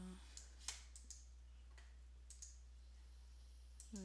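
Faint, scattered computer mouse clicks over near silence: about half a dozen separate single clicks, the clearest about two-thirds of a second in.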